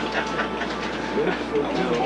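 Indistinct talk from several men in a small room, over a steady mechanical noise.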